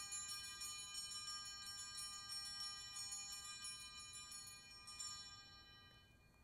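Altar bells, a cluster of small hand bells, shaken again and again in quick strokes, rung at the elevation of the consecrated host. The ringing goes on steadily and dies away a little after five seconds in.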